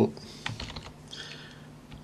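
A few keystrokes typed on a computer keyboard, faint and irregular.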